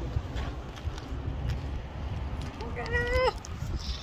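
Street background outdoors: a steady low rumble, with one short, wavering pitched call about three seconds in.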